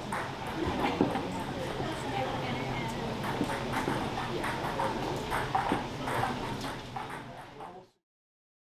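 Club audience chatter with scattered claps and shouts after the band has stopped playing, fading out just before the end.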